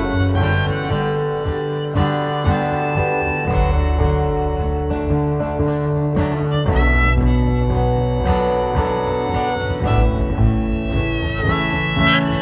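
Instrumental break in a folk song: a harmonica plays a lead line with bent notes over strummed acoustic guitar and a steady low backing.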